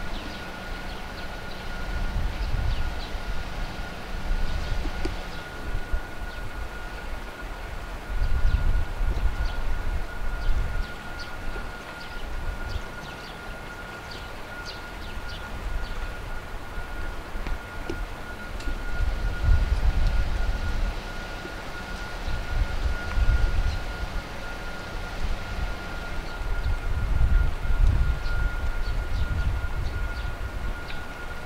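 AV-8B Harrier's Rolls-Royce Pegasus turbofan running at taxi power: a steady high whine over low rumbling that swells and fades several times.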